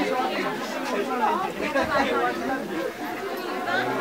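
Several people talking at once: overlapping conversational chatter from a small crowd, without a pause.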